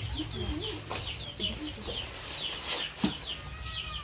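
Chicks peeping: a steady run of short, high, falling peeps, several a second. A single sharp click comes about three seconds in.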